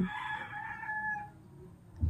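A faint, drawn-out animal call in the background, held for about a second and a half before fading out.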